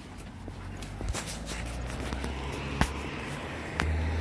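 Footsteps on a concrete sidewalk at a walking pace, over a steady low rumble; one sharper step stands out a little before three seconds in.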